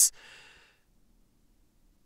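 A narrator's soft breath between sentences, lasting under a second, then near silence.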